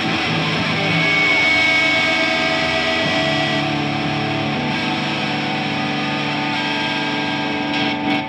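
Rock music: distorted electric guitars holding long, ringing chords, with no drums.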